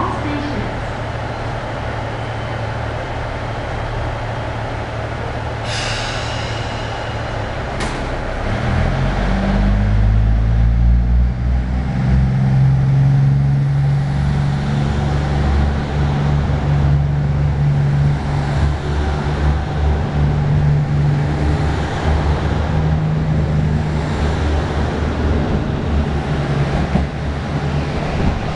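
JR Central KiHa 85 series diesel multiple unit idling at the platform, with a brief hiss about six seconds in and a sharp click near eight seconds. Its Cummins diesel engines then rev up as it pulls away and accelerates hard, and the engine note stays loud and steady as the cars pass.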